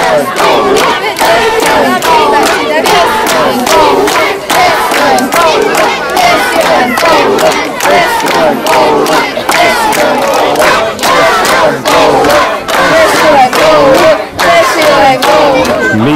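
A crowd of schoolchildren shouting together, loud and unbroken, with many voices overlapping.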